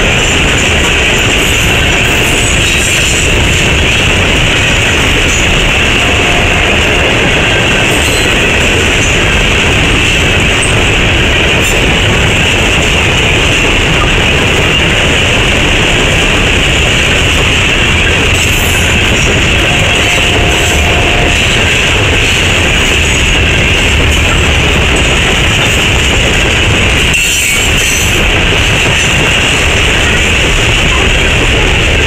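Loaded coal hopper cars of a unit train rolling past at about 40 mph: a loud, steady rumble of steel wheels on rail.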